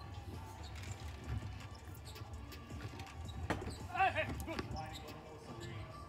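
Faint basketball game audio: a ball knocking on a hardwood court, with one clearer bounce about three and a half seconds in, and a short call from a voice just after, over a low steady hum.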